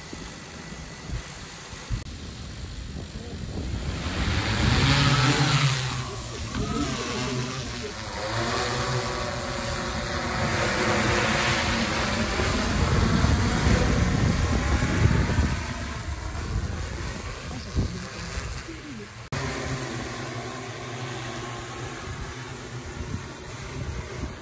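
Large multi-rotor crop-spraying drone's propellers and motors: a buzz that grows loud about four seconds in as it lifts off, then rises and falls in pitch as it manoeuvres overhead.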